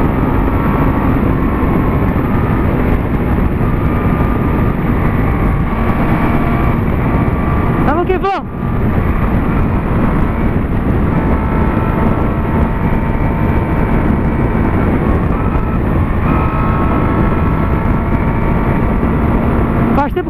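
Honda CB600F Hornet's inline-four engine running through an aftermarket Atalla 4x1 exhaust at highway cruising speed, under heavy wind rush on the rider-mounted microphone. The engine note dips briefly about eight seconds in.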